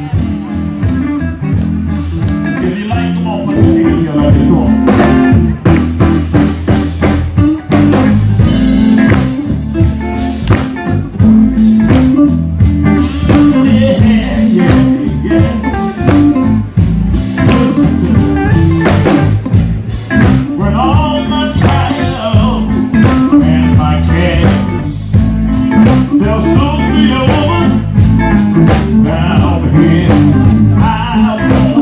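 Gospel quartet and band playing live through stage speakers: electric guitar, bass guitar and drums in a slow, bluesy groove, with a singer's voice over it.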